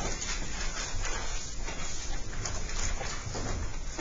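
Classroom room noise: faint rustling and shuffling with scattered small knocks, and no clear voice.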